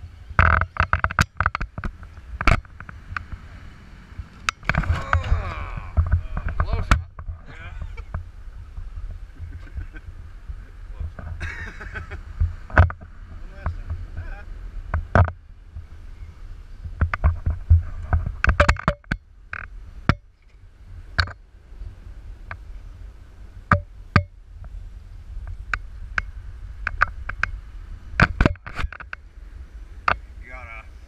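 Radio-controlled scale rock crawler knocking and scraping its tyres and chassis on granite rock, a scatter of sharp knocks and clicks over a steady low rumble.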